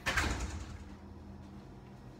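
A door being shut: a sudden rush of noise that fades within about half a second.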